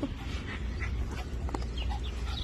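A small dog making a few short, high-pitched whines and yips over a steady low rumble.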